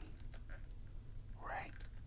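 Faint clicks and rubbing of fingers working the head of a plastic action figure, with a soft whispered voice about one and a half seconds in.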